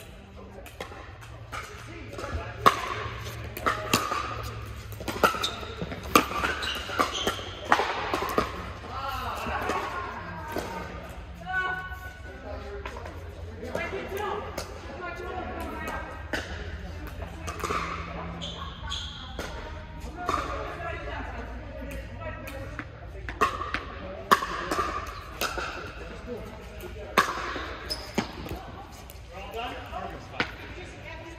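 Pickleball paddles hitting a plastic pickleball in rallies: sharp pops every second or so, ringing in a large hall, over voices and a steady low hum.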